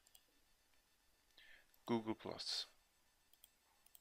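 A few faint computer mouse clicks, separate and brief.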